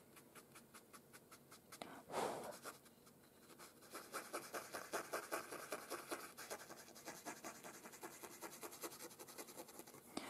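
Cotton swab rubbing soft pastel into paper in short, faint back-and-forth strokes, several a second. There is one longer, louder rub about two seconds in, and the strokes come thicker from about four seconds on.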